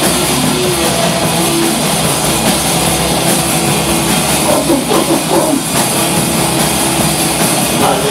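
A live rock band playing loud, with electric guitars over a drum kit.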